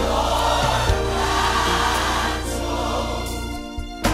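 Background music with a choir singing held notes over accompaniment; it thins out and drops in level near the end.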